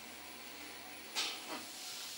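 Faint, steady hiss with a low hum inside an Otis Gen2 lift car as it travels, with a short burst of noise just over a second in.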